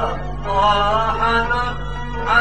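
Constantinois malouf music from an old recording: a drawn-out, ornamented melodic line that holds and glides in pitch, with brief breaks, over a steady low hum.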